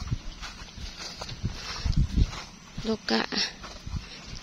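Footsteps on a grassy path between rice paddies, with irregular low rumbling thumps on the microphone; a voice speaks briefly near the end.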